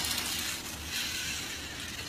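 Faint, steady outdoor background hiss with no distinct event, in a short pause between voices.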